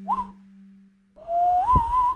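A person whistling to call a puppy: a short rising chirp, then about a second in a longer whistle that climbs in pitch with a slight wobble.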